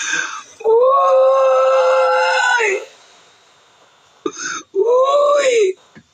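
A man's voice letting out a long drawn-out wail held at one pitch for about two seconds, then a shorter wail that rises and falls near the end.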